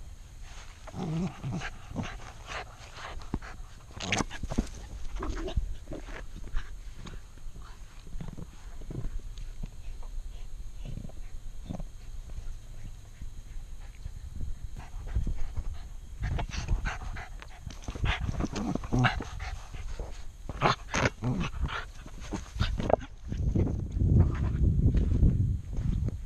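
Two West Highland White Terriers scuffling over a basketball: dog vocal noises during play, among many short knocks and scuffs that come in clusters near the start and again later on.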